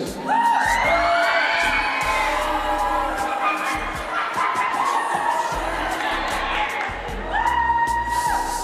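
Music with a deep bass, with audience whoops and cheers rising and falling over it.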